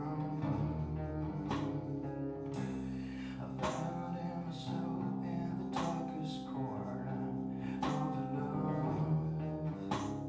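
Acoustic guitar played live, slow chords struck roughly every two seconds and left to ring.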